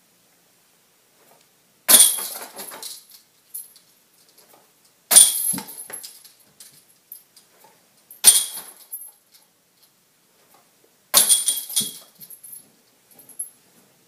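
Four disc golf putts striking the chains of a portable basket, about three seconds apart: each is a sudden metallic chain jangle that rings out for about a second.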